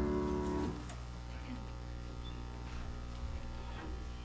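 The last chord of a congregational worship song with choir and instruments, which stops under a second in. After it comes quiet room tone with a steady low hum and faint stirring from the congregation.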